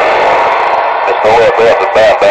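CB radio receiving a weak, distant station: a loud hiss of static for about a second, then a garbled voice comes through the noise.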